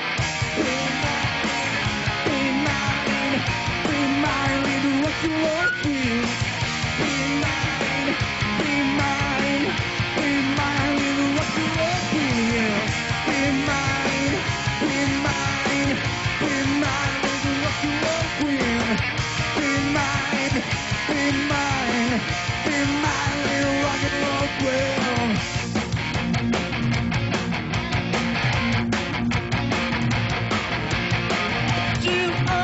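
Live rock band playing an instrumental passage on electric guitars, bass and drums, with a repeating guitar riff that slides in pitch.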